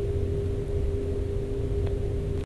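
Steady low drone of running machinery with a constant mid-pitched hum, the background of a ship's machinery space.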